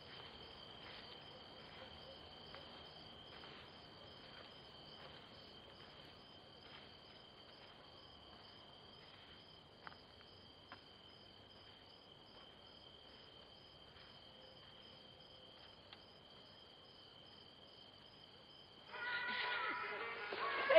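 Faint crickets chirping: a steady high trill with softer pulses recurring roughly once a second. Near the end a much louder sound of music and voices cuts in.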